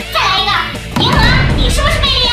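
A high-pitched, child-like voice speaking over background music.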